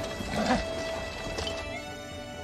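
Film soundtrack of a cavalry charge: orchestral score with horses' hooves galloping, and a horse whinnying about half a second in. The sound drops quieter shortly before the end.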